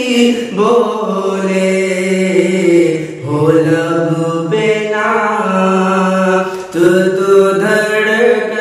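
A male voice singing a naat in long drawn-out, gliding notes, in three phrases with short breaks about three seconds in and near seven seconds.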